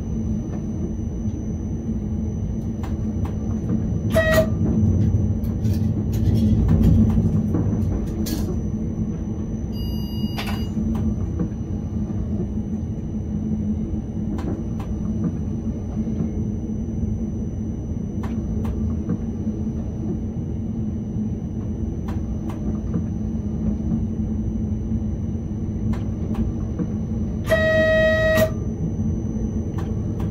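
Škoda RegioPanter electric multiple unit running, heard from inside the driver's cab: a steady low rumble and hum of the train on the track. A brief horn toot about four seconds in and a horn blast of about a second near the end.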